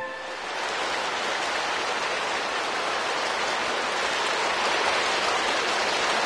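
Audience applauding steadily after the song's final chord, whose tones fade out in the first moment.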